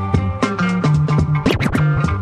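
A funk-style track in a DJ mix, with a steady beat and bass line, cut into about one and a half seconds in by a short burst of record scratching: a few quick back-and-forth pitch sweeps before the groove comes back in.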